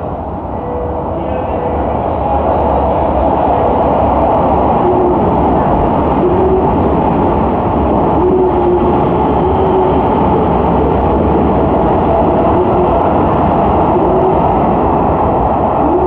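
Keisei 3000-series (3050-type) electric train running through an underground station at speed without stopping. A loud, steady rumble of wheels on rails builds over the first two seconds and then holds.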